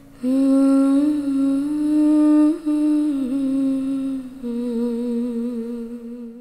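A voice humming a slow melody in long held notes, entering just after the start, over soft background music with low sustained notes.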